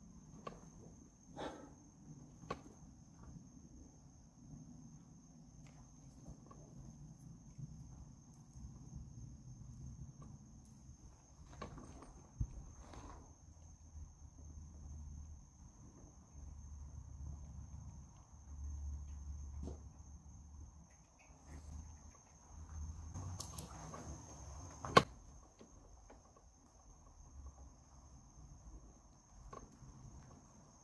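Crickets trilling in one steady high note, with faint footsteps crunching on debris and one sharp click about 25 seconds in.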